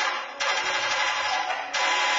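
Amplified experimental improvised music: a dense, crackling noise texture that breaks off and restarts in abrupt blocks about every second.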